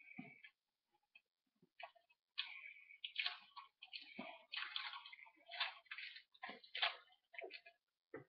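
Paper wrapper of a Bazooka bubblegum crinkling and rustling as it is unwrapped by hand, in irregular crackles that are sparse at first and turn busy about two and a half seconds in.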